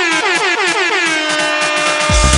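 House/minimal techno mix at a breakdown: a buzzy, horn-like synth note stutters about five times a second, each repeat sliding down in pitch, then settles into one held tone.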